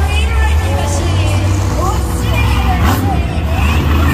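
Monster truck engines idling with a steady deep rumble, under arena PA music and crowd voices.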